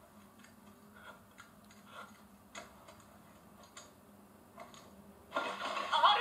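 Faint, scattered soft clicks and ticks over a quiet room; a little over five seconds in, a loud voice from the anime episode suddenly comes in.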